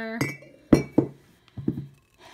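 Glass bottles clinking against each other as they are handled: two sharp clinks about a quarter second apart, then a few softer knocks.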